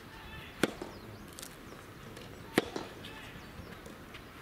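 Two sharp pocks of a soft-tennis racket striking the rubber ball, about two seconds apart.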